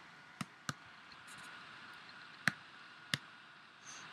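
Four sharp computer mouse clicks over faint room hiss: two in quick succession about half a second in, then two more about two and a half and three seconds in, the third the loudest.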